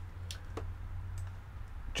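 A few isolated clicks of computer input, key or mouse presses, over a low steady hum.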